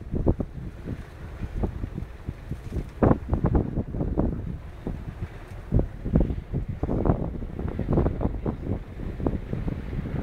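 Wind buffeting the microphone in irregular gusts, a low rumble that surges and drops every second or so.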